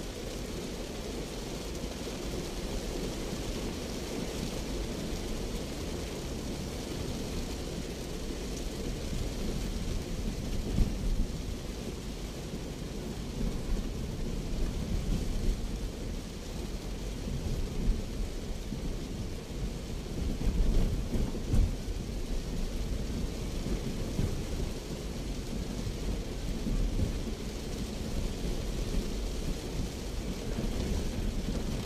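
Heavy rain hitting the roof and windshield of a Daihatsu Terios, heard from inside the cabin while driving, over a steady low rumble of engine and tyres on the wet road. A few louder knocks stand out around the middle.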